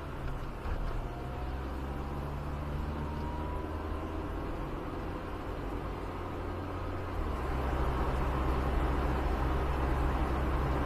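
Car engine idling, heard from inside the cabin, then pulling away at low speed, growing louder from about seven seconds in as the car moves off and turns.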